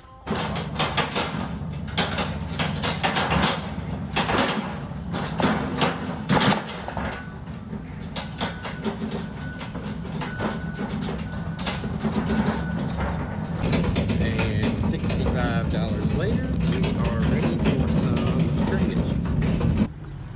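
Metal flatbed hardware-store cart loaded with PVC pipe and fittings rolling over the floor: steady wheel rumble with frequent rattling clicks and knocks. About two-thirds of the way through, it turns into a steadier, rougher noise.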